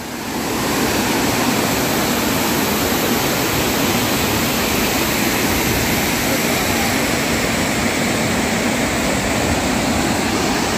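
Waterfall rushing as a steady roar of water cascading over boulders into a pool, growing louder in the first second and then holding even.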